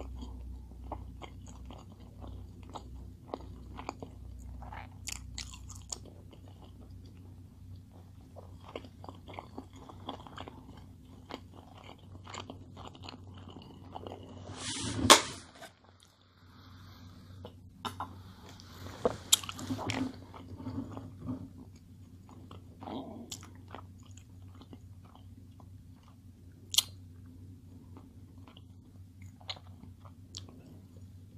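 Close-miked chewing and biting of a large burger, with soft wet clicks throughout. About halfway through there is a loud sharp crackle of a plastic water bottle, followed by a drink.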